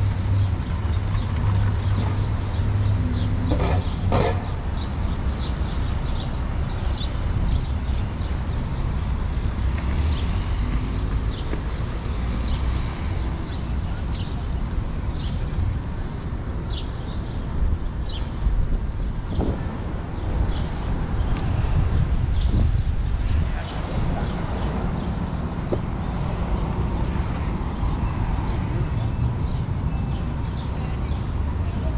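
City street traffic on a busy avenue: a steady low rumble of passing cars, with a dense scatter of short ticks from footsteps on the pavement.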